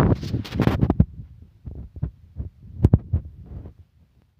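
Wind buffeting a phone's microphone, with handling bumps as the phone is swung around: irregular low thumps and rumbles, loudest near the start and again about three seconds in.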